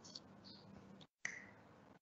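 Near silence: faint room noise with a few small, sharp clicks, the clearest a little past the middle.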